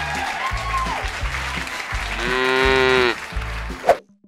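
Cartoon applause sound effect over the closing bars of a children's song. Short bass notes play under the clapping, and about two seconds in a long held pitched note sounds for about a second.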